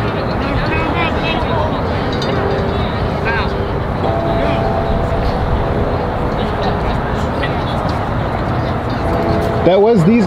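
Distant voices of players and people on the field, faint and scattered over a steady, loud outdoor background noise.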